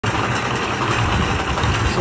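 Small belt-driven electric cement mixer running, a steady rumble and rattle of the turning drum.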